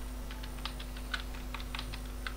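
Computer keyboard typing: quick, irregular key clicks, over a faint steady hum.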